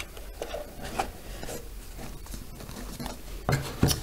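Small cardboard boxes being handled on a table: a lid rubbing as it slides onto a box, a few light taps, then a couple of louder knocks near the end as the shipping box is picked up and set down.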